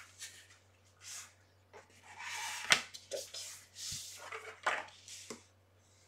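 Cardstock photo frame being handled on a craft table: paper rustling and sliding in short bursts, with a sharp click a little before the midpoint and a low knock soon after. Near the end, a bone folder rubs along a folded edge of the paper.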